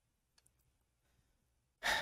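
Near silence with a few faint clicks about half a second in, then a person's short, audible breath near the end, just before speech resumes.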